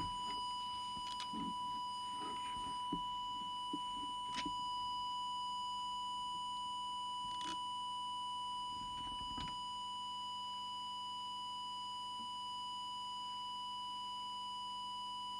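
A steady 1 kHz audio test tone from the test equipment, used as the modulating signal while the CB's FM transmit deviation is set. A few faint clicks from handling the equipment fall over it.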